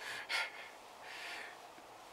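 A man's breathing: two short, sharp breaths, then a softer, longer exhale about a second in.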